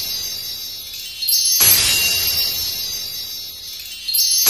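A chime sound effect: a bright shimmer of many high bell-like tones, struck about a second and a half in and fading slowly. At the start the tail of an earlier chime is still dying away.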